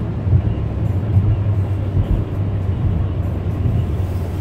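Car driving on a wet highway in heavy rain, heard inside the cabin: a steady low rumble of road and engine with a hiss of tyres on water.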